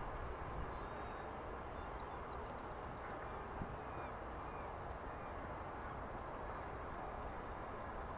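Steady outdoor background hiss with a few faint, high bird calls about one to three seconds in.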